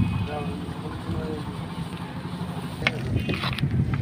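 A heap of nylon fishing nets burning in an open fire: a steady low rumble with crackle, with people talking faintly around it.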